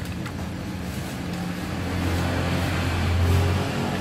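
A low, steady motor hum that grows louder about two seconds in and eases off near the end.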